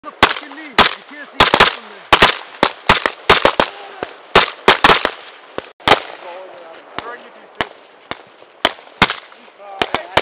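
Several rifles firing single shots in an irregular string of about twenty sharp cracks, close together through the first six seconds and thinning out after.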